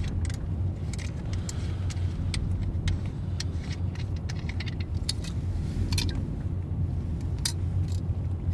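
A steady low rumble, like a vehicle heard from inside, with scattered light clicks and rattles over it.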